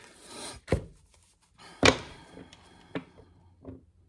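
A few sharp knocks on a hard surface: one about a second in, a louder one near the middle, then two fainter ones.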